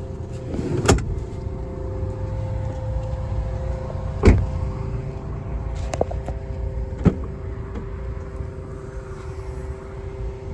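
2010 Honda Pilot's doors being handled and shut: a few sharp thumps, the loudest about four seconds in. Underneath is a steady hum from the SUV running.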